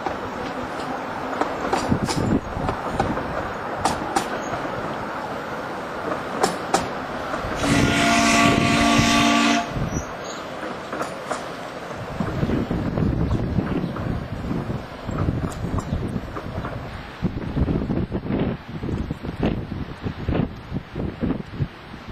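Miniature narrow-gauge steam locomotive running with its train of carriages, sounding its steam whistle once for about two seconds some eight seconds in.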